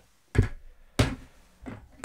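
Two sharp knocks, about two-thirds of a second apart, as pocketknives are handled and set down on a hard desk surface.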